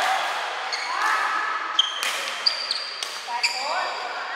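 Badminton rally in a hall: several sharp racket strikes on the shuttlecock, each with a high ringing ping, and shoes squeaking on the court floor with short rising squeals about a second in and again late on.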